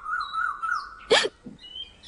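Birds chirping: a wavering, trilling call in the first half and a few short high chirps, with one loud, brief, sharp sound just past halfway.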